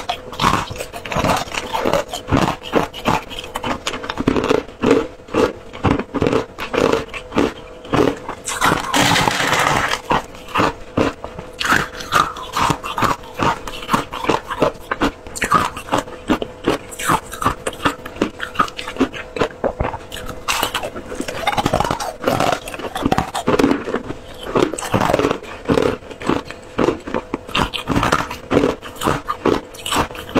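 Crushed flavoured ice chewed close to clip-on microphones: a rapid, uneven run of crisp crunches and cracks, with short pauses between mouthfuls.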